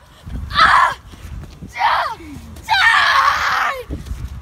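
A boy screaming in three high-pitched shrieks: a short one about half a second in, one near two seconds that slides down in pitch, and a longer one in the second half.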